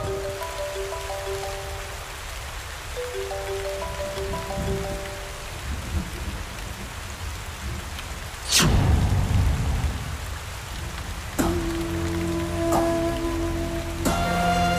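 Heavy rain falling steadily, under a sparse melodic background score. About eight and a half seconds in comes a loud sudden sweep falling from high to low, and a held chord of the score follows.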